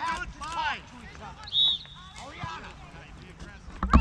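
A short, shrill referee's whistle blast about one and a half seconds in, over distant voices of players and sideline spectators. Near the end comes a sharp thud, a soccer ball being kicked.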